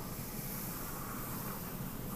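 Faint, steady scratch of a graphite pencil drawing a long curve on paper, over low background hiss.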